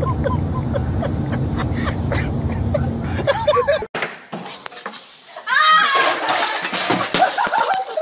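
Steady road and engine rumble inside a moving car, with a person's voice wavering up and down over it. After a sudden cut about four seconds in, loud excited voices shout in a tiled hallway.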